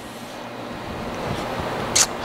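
Rustling handling noise that grows steadily louder, with a few faint low thumps and a sharp click at the very end.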